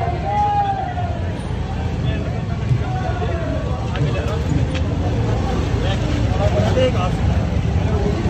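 Motorcycle engines running at low speed in a slow-moving procession, under a crowd's indistinct voices and calls.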